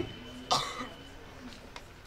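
A man coughs once, short and sudden, into a handheld microphone about half a second in. Then there is low room tone with a couple of faint clicks.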